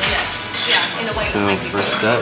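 Metal cutlery clinking and scraping on ceramic plates, over background music.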